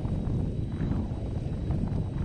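Wind buffeting the camera microphone while riding downhill on an electric unicycle: a steady, uneven low rumble with no distinct events.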